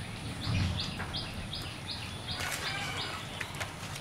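A bird calling a quick run of about eight short, high notes, roughly two a second, over steady outdoor background noise with a faint, steady high whine.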